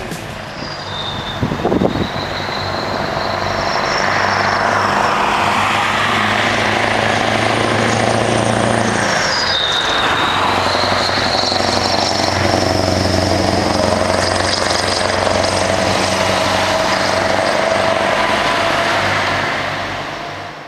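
Scania tractor-trailer with an open exhaust driving along the road, its engine pulling steadily and loud, with a high whine that dips in pitch and then rises again about halfway through.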